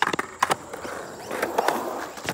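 Skateboard on concrete: a sharp clack as the board hits the ground at the start and a couple more knocks about half a second in. Then its wheels roll over the concrete, the rolling noise growing louder through the second half.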